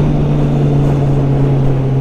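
Kawasaki Z800's inline-four engine running at a steady cruise, its pitch holding nearly level, over a heavy rush of wind noise.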